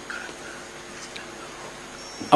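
Quiet room tone in a crowded courtroom with a faint steady hum, during a pause in speech.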